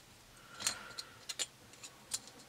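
A few faint, light metallic clicks, the first with a brief ring: small metal radiator-cap parts being handled and set down.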